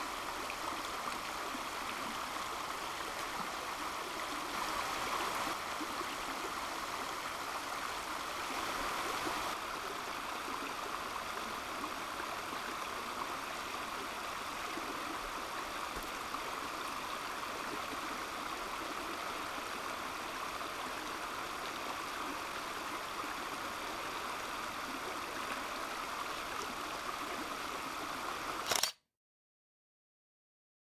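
Water of a shallow rocky creek rushing steadily over stones. It cuts out suddenly near the end.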